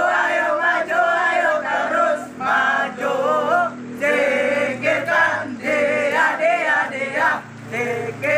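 A group of young men singing a marching song loudly in unison while marching, in short phrases with brief breaks between them.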